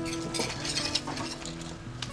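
Light clinks and scrapes of hard fired material as the sealed entrance of a wood-fired kiln is broken open, mostly in the first second or so, with steady tones underneath.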